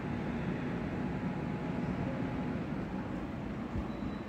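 LG split air conditioner's indoor unit running, its fan giving a steady airflow noise.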